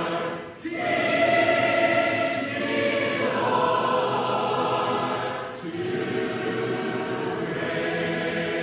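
A choir singing in long, held chords, with short breaks between phrases about half a second in and again past the five-second mark.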